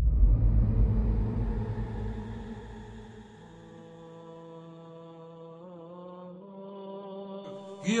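Logo intro music: a deep low boom that fades away over the first three seconds, with a long held droning note, chant-like, that carries on alone afterwards and wavers briefly near the six-second mark.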